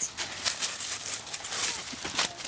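Dry fallen leaves crackling and rustling under a dog's paws and a person's feet on a leaf-covered lawn, a quick run of irregular crackles.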